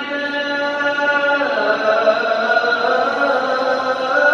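Muezzin's call to prayer (adhan): a man's voice holding one long, drawn-out melodic note that changes pitch about a second and a half in.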